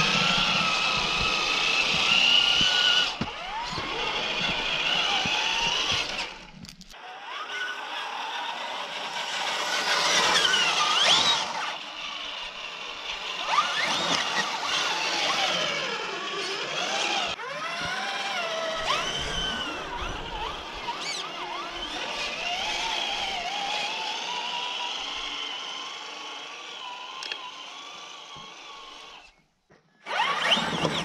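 Electric motor and geared drivetrain of an RC rock crawler truck whining, the pitch rising and falling as the throttle changes, with a few abrupt cuts between shots.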